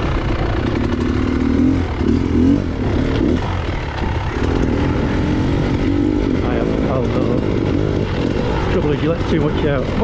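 Trail motorcycle engine running as the bike rides over rough grass, its pitch rising and falling with the throttle.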